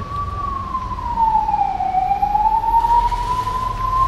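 A single high, whistle-like whine that sags in pitch about two seconds in and then climbs back to its first pitch, over a low background rumble.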